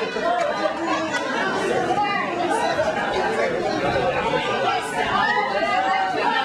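Several voices talking at once, overlapping into a jumble of chatter with no clear single speaker.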